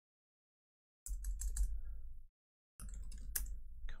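Typing and clicks on a computer keyboard in two short stretches over a low hum, with dead silence between them.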